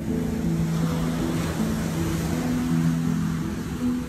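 Slow ambient music of sustained low notes over the wash of surf breaking on a sandy beach, the noise of the surf swelling in the middle.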